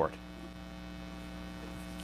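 Steady electrical mains hum, a low buzz made of many even tones held at one pitch, with the end of a man's spoken word at the very start.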